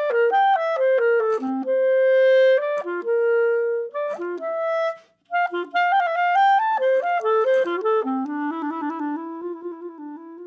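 Unaccompanied clarinet playing a fast audition etude: quick runs of notes with a few held notes, a brief breath break about five seconds in, and the line settling into the low register near the end.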